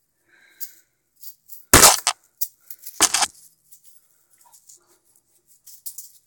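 Juggling balls handled between runs: faint rustles and small clicks, broken by two loud, short knocks close to the microphone about two and three seconds in.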